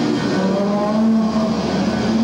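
Heavy metal band playing live, with a distorted electric guitar holding sustained notes that bend in pitch.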